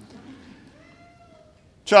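Baby giving one faint, brief whimper, a thin cry that rises slightly and falls away about a second in.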